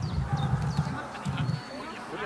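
Quick, irregular thudding footfalls of a large dog and its handler running on grass.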